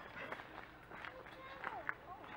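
Indistinct distant voices of people talking, mixed with scattered short chirps and faint clicks.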